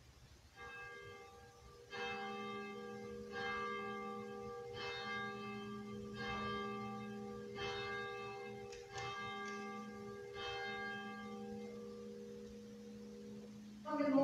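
A church bell tolling, about one stroke every second and a half, each stroke ringing on into the next, for around nine strokes before it dies away near the end.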